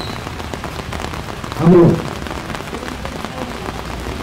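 A man's voice through a handheld microphone pauses and says one short word a little under two seconds in. A steady hiss of background noise runs beneath it.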